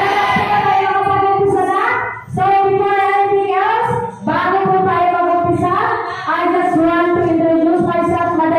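A woman singing into a handheld microphone without backing music, in long held high notes, her phrases broken by two short breaths.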